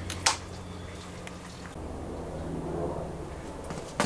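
A single sharp knock about a quarter second in, over a steady low hum, with faint muffled sounds later on.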